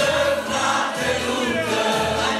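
Church congregation singing a hymn together, many voices held in long sung notes.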